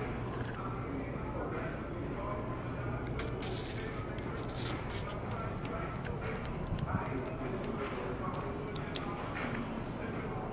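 Indoor showroom ambience: distant voices and faint music over a steady low hum. A short, loud hiss comes a few seconds in, with scattered small clicks.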